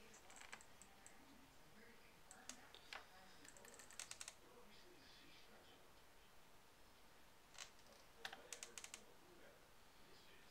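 Near silence broken by faint small clicks and taps from a paintbrush and painting things being handled at a table, coming in scattered clusters, with a quick run of clicks about four seconds in and another near the end.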